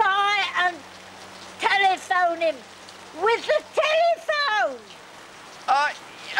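Steady rain falling, with a raised voice calling out in several short bursts over it.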